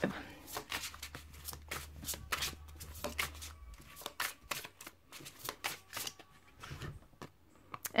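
A tarot deck being shuffled by hand: a quick, irregular run of soft card clicks and flicks that stops shortly before the end.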